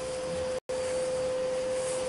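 A steady single-pitched hum, one unchanging tone over faint hiss, which cuts out completely for an instant just over half a second in.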